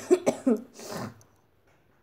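A person coughing: a short run of coughs, then a longer breathy sound, all within about the first second.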